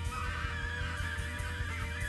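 Saxophone playing a wavering, bending high line that comes in just after the start, over a reggae band's steady bass and drum groove.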